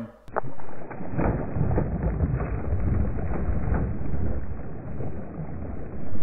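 Deep, muffled rumble with a few faint ticks: the slowed-down sound of a cast net throw over shallow water, heard in a slow-motion replay. It is loudest from about one to four seconds in.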